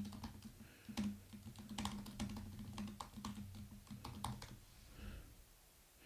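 Typing on a computer keyboard: a quick, irregular run of key clicks that dies away about four and a half seconds in, over a faint low hum.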